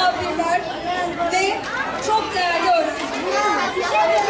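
Many children's voices chattering and calling out at once, high-pitched and overlapping, with no single speaker standing out.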